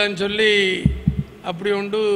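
A man speaking in close microphones, broken about a second in by two or three short, deep thuds picked up by the microphones before he resumes.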